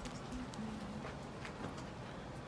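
Faint, irregular clicks of fingers handling the plastic shrink-wrap on a vinyl LP album.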